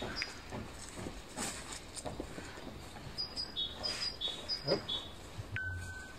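Footsteps on dry grass, with a small bird repeating a high two-note call several times in the second half.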